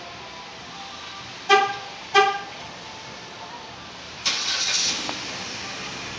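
2012 Jeep Patriot being remote-started: the horn gives two short toots about half a second apart, and about four seconds in the 2.4-litre engine starts and settles into a steady idle.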